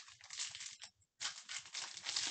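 Plastic trading-card pack wrapper crinkling as it is torn open by hand, in two bursts with a brief pause about a second in.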